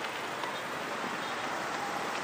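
Steady hiss of outdoor city ambience with road traffic of cars and motorbikes, even and unbroken.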